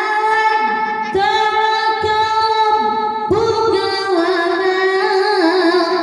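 A boy's melodic Quran recitation (tajweed) through a microphone, drawn out in long held notes. The voice breaks for a breath about a second in and again about three seconds in, then steps down and up in pitch near the end.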